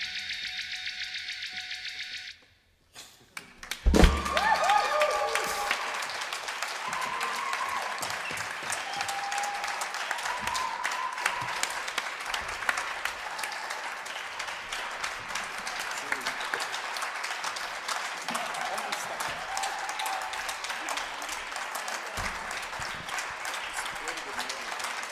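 The band's last note rings out and fades over the first two seconds, followed by a brief silence. Then audience applause breaks out suddenly about four seconds in and carries on steadily, with a few scattered shouts from the crowd.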